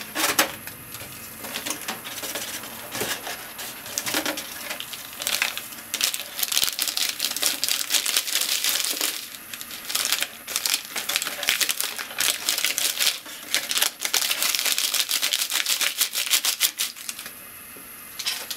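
Plastic seasoning sachet crinkling as it is torn open and shaken out over dry instant noodles: a run of quick crackles and rustles, busiest in the middle and dying down near the end.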